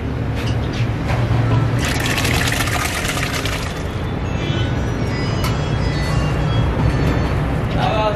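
Boiled red kidney beans and their cooking water poured from a pot into hot fried masala, with a burst of sizzling and splashing for about two seconds, over a steady low rumble.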